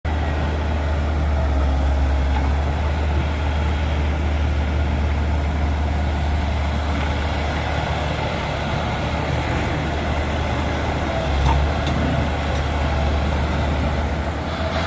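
Diesel engine of a Komatsu tracked hydraulic excavator running steadily, a low drone, with a brief swell near the end.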